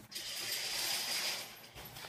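Paper tissues rustling as they are pulled from a tissue box and crumpled, a continuous crinkle lasting about a second and a half.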